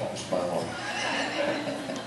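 People laughing, with a high, wavering laugh.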